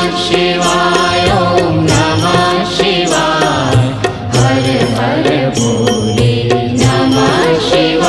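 Devotional music: a sung mantra chant over sustained drone notes, with a steady beat.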